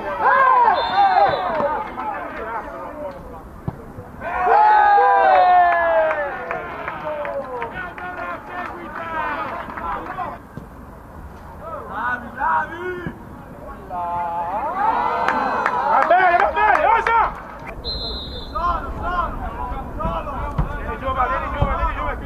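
Voices shouting across a football pitch in repeated loud calls, over a low steady background rumble. Two brief, high, whistle-like tones sound about a second in and again near the end.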